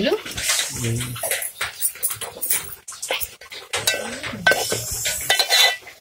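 A metal spoon repeatedly knocking and scraping against an aluminium cooking pot as a mushroom masala is stirred.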